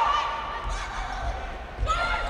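Volleyball rally in an indoor gym: a few dull thumps of the ball being played, the last just before the end, with a voice over the play.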